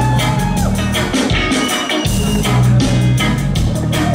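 Live reggae band playing an instrumental passage, with a drum kit keeping a steady beat and an electric bass guitar carrying the bass line. The bass drops out for about a second near the middle, then comes back in.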